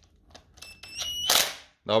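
Cordless impact wrench driving a bolt into the oil pump of a Nissan VQ35DE V6: a thin, high motor whine rising slightly in pitch, then a short, loud burst of impact hammering about a second and a half in as the bolt is lightly snugged down.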